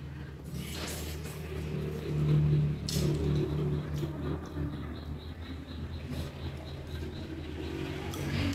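Close-up eating sounds of noodles being slurped and chewed, with a few short sharp sounds, over a low steady motor hum that grows louder about two seconds in.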